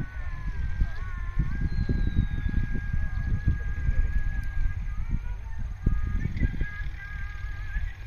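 Wind buffeting the microphone in low, irregular gusts. Faint, thin, high tones sound in the background, one held steady for about three seconds near the middle.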